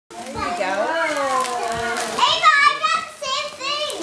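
Excited children's voices without clear words: a drawn-out call, then high-pitched squeals from about two seconds in.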